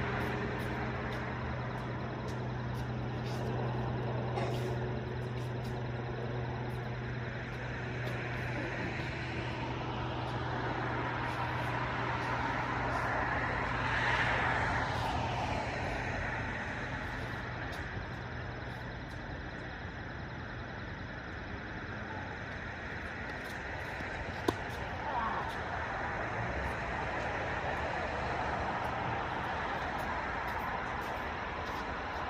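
Steady road traffic noise over a low steady hum, swelling as a vehicle passes about halfway through and fading again; a single sharp click near the end.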